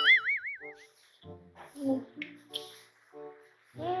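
A cartoon-style wobbling 'boing' sound effect in the first second, over quiet background music. A short 'hmm' hum comes near the end.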